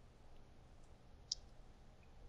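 Near silence: faint room tone with one short, sharp click a little past the middle.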